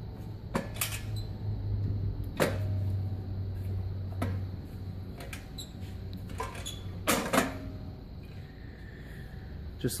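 Sharp metallic clicks and knocks as the stainless steel brush drum of a capsule polisher is handled and its bearings are seated into their slots on the frame, with a low hum underneath during the first half.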